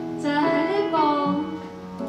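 A man singing a worship song over sustained electronic keyboard chords; the sung phrase ends after about a second and the keyboard chord holds on.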